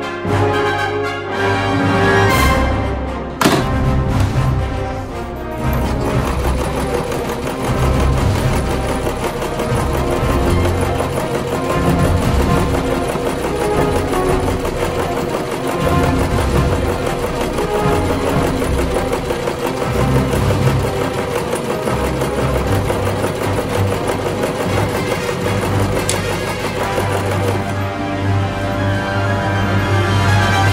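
Background music over a domestic sewing machine stitching cotton fabric.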